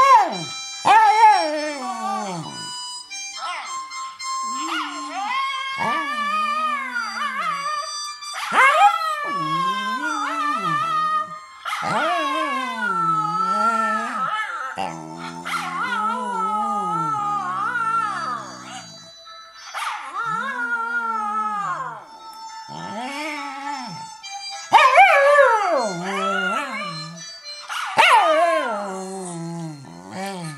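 Jack Russell terrier howling along with a recording of its own howling played from a phone speaker: a series of long, wavering calls that glide up and down in pitch, with short breaks between them.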